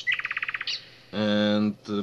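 A bird trilling: a fast run of about a dozen short, high chirps lasting just over half a second at the start.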